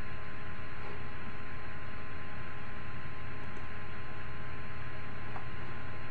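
Steady background hiss with a constant electrical hum and a thin, high steady tone: the recording's noise floor, with no other sound.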